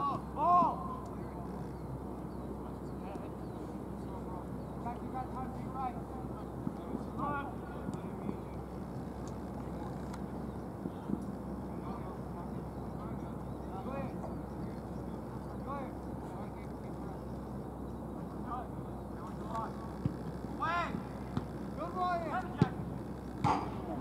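Players' distant shouts and calls on an open soccer field over a steady low background hum, with a sharp knock near the end as a shot is struck at goal.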